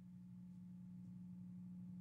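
Near silence with a faint, steady low hum in the background.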